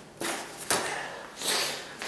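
A soft nylon camera bag being handled and set down on a tile floor: a few short rustling, scraping bursts.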